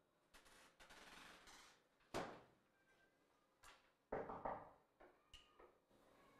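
Faint, scattered knocks and clatter of things being handled at a kitchen counter, with a short rustle about a second in. The loudest knock comes about two seconds in.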